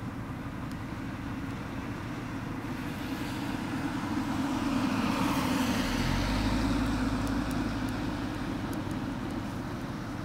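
A road vehicle passing: traffic noise swells from about three seconds in, is loudest around the middle with a deep engine rumble coming in just past halfway, then eases off.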